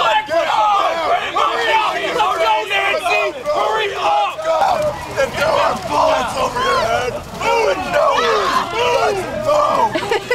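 A group of people shouting and yelling at once, with many voices overlapping loudly and no clear words.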